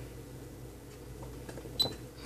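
Faint steady bench hum with a few soft clicks from oscilloscope front-panel buttons being pressed, and one sharper click with a brief high beep near the end.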